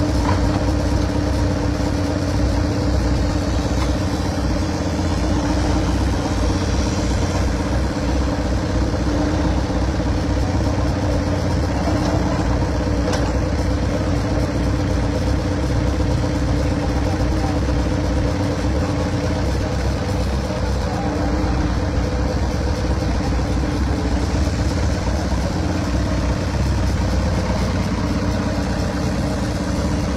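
An engine running at a steady pitch.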